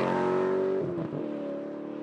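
A car engine running at steady revs, with a brief drop and change in pitch about a second in, then slowly fading away.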